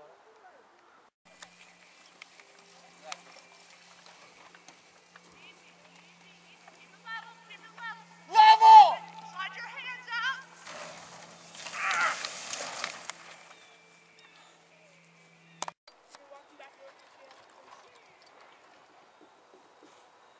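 Faint outdoor background with scattered small sounds. A voice calls out once, loud and high, about eight seconds in, among a few wavering voice sounds. A rushing noise follows for about three seconds.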